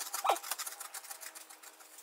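People chewing dry chickpea-based cereal: a soft, rapid run of crisp crunching clicks.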